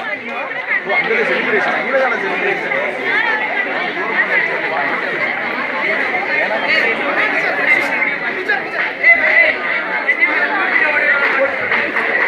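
Crowd chatter: many voices talking over one another at once, steady throughout.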